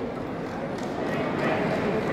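Indistinct background voices and general hubbub in an indoor athletics arena, with no single loud sound standing out.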